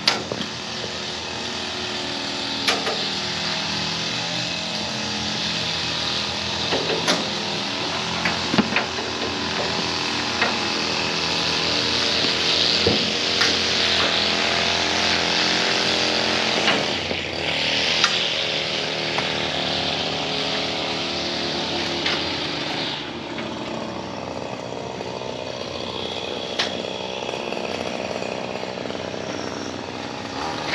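A trailer-mounted leaf loader's gas engine running steadily, with scattered knocks and clanks from work on the dump box and its net, and a brief rush of air about two-thirds of the way through.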